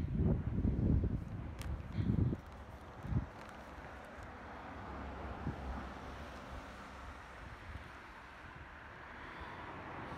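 Wind buffeting the microphone in low rumbling gusts for the first two seconds or so, with one more short gust about three seconds in, then a faint steady outdoor background hiss.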